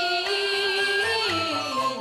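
A Taiwanese opera (gezaixi) singer holds one long sung note with wide vibrato, then slides down in pitch over the last half, with instrumental accompaniment.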